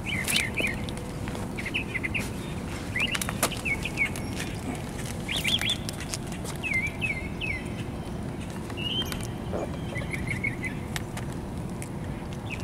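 A bird chirping outdoors: short phrases of a few quick, high notes, repeated about every one to two seconds, over a steady low background rumble.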